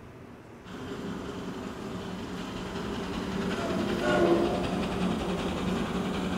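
Recorded sound effect of a train running on rails, starting about a second in and growing steadily louder.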